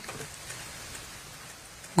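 Steady background hiss of room and microphone noise, without speech.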